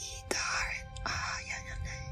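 A person whispering a few short phrases over a sustained, droning music bed.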